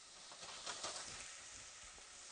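Faint sizzling of vegetables sautéing in a frying pan, with a few light clicks, likely from stirring, between about half a second and one second in.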